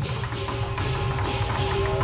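Lion dance percussion: a large drum beating steadily with cymbal crashes about twice a second.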